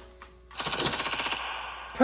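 A burst of rapid-fire gunfire, a machine-gun-like rattle that starts about half a second in and lasts about a second and a half, fading toward the end.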